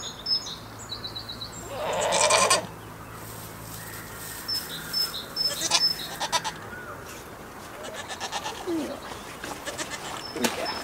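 A goat bleats loudly once, about two seconds in. Small birds chirp in the background.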